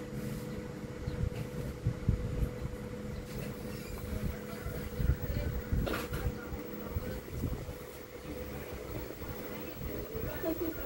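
Quiet work noise of hand soldering a surface-mount linear voltage regulator onto a circuit board with a soldering iron and tweezers: faint irregular scraping and tapping over a steady low hum, with one sharp click about six seconds in.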